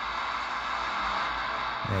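A shortwave AM broadcast on 9455 kHz coming from a Degen DE1103 receiver's speaker: faint music buried under steady hiss and static. The weak, noisy reception comes through a Tecsun AN-48X active loop antenna that the owner finds a poor performer on shortwave.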